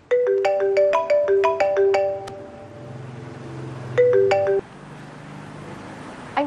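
Mobile phone ringtone: a short melody of ringing, marimba-like notes. It starts over about four seconds in and cuts off abruptly after a few notes as the call is answered.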